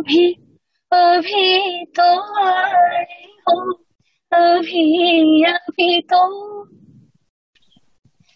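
A woman singing unaccompanied, in short phrases with held, wavering notes and brief silences between them. The voice stops about seven seconds in.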